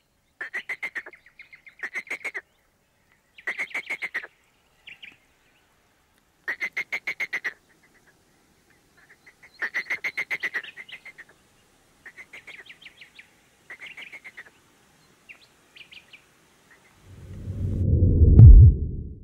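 An animal's rapid rattling calls, repeated in short bursts of up to about a second, some louder and some fainter. Near the end a low rumbling whoosh swells up.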